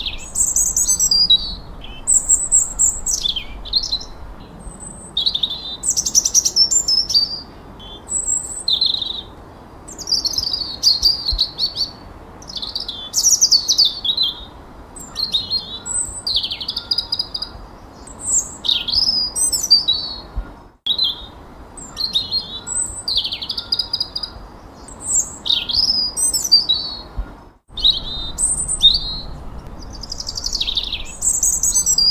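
Songbirds singing: a steady stream of short, high whistled phrases and chirps, many sweeping downward, following one another with brief pauses.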